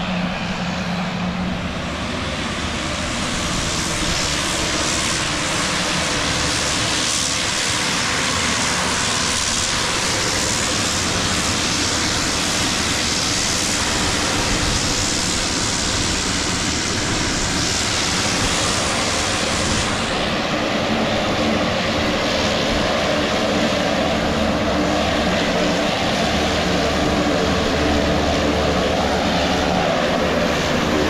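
Twin-engine turboprop aircraft running on the airport apron: a loud, steady hiss and whine, with a lower engine and propeller hum that grows stronger in the second half.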